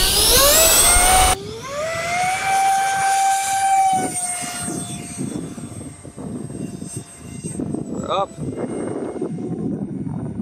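RC jet's 70 mm electric ducted fan spooling up in a steeply rising whine for takeoff, then holding a steady high whine that fades away as the jet climbs out. The sound breaks off sharply just over a second in.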